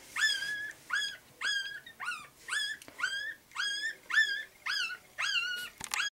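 Newborn Chinese Crested puppy whimpering as it is bottle-fed: a steady run of short, high-pitched squeals, about two a second, each sliding up in pitch and then holding.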